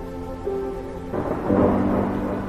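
A burst of thunder breaking in about a second in and growing loudest near the end, over background music of held notes.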